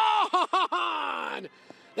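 Excited human yelling, cheering a home run: a short shout, a quick run of shorter whoops, then one long yell that breaks off about a second and a half in.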